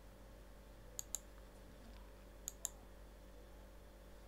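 Computer mouse clicking: two pairs of quick clicks, one about a second in and another about a second and a half later, over a faint steady hum.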